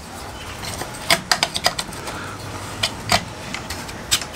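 Handling clicks and knocks of a plastic edge guide being taken off and fitted onto a Work Sharp electric knife sharpener. There is a cluster of sharp clicks between about one and two seconds in, then two more near the end.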